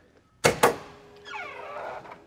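Electric pull-down latch on a carbon-fibre trunk lid releasing: two sharp clicks about half a second in, followed by a faint steady whine from the latch mechanism. The powered pull-down is there so the light carbon lid never has to be slammed.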